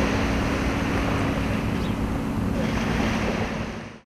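Steady wind and sea noise with a low, even engine drone from a fishing boat under way.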